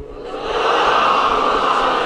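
A congregation reciting salawat aloud together in unison, answering the call for a salawat. It is a dense mass of many voices that swells up about half a second in and then holds steady.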